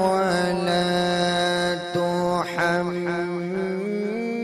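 A man's solo voice chanting a devotional recitation into a microphone, holding long notes with slow ornamented turns in pitch and brief breaths between phrases.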